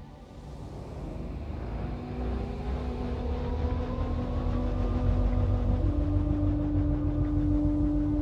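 Film sound design: a deep rumble swells steadily louder under held musical tones. A low sustained note steps up in pitch about six seconds in, and a faint tone glides upward.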